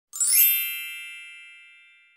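A bright chime sound effect over an intro title card: a quick rising sparkle that rings out into one long ding, fading away over about two seconds.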